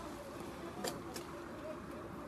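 Faint voices of people talking in the background, over a faint steady hum, with two short light clicks about a second in.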